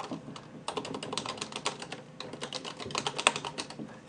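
Computer keyboard typing: a quick, uneven run of key clicks that starts just under a second in and goes on until near the end.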